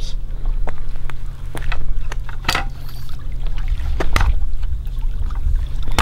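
Sea water washing against the rocks under a steady low rumble, with footsteps and a few sharp scuffs and clicks on the rough concrete ledge.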